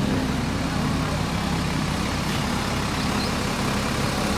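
Diesel bus engine idling steadily close by, a constant low hum with no revving.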